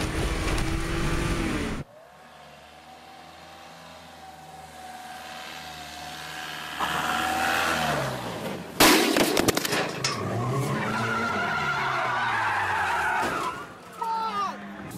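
Car-crash clips cut together. A loud rumbling noise cuts off abruptly about two seconds in, and a car engine then revs higher and higher. A sharp crash comes about nine seconds in, followed by an engine revving unevenly.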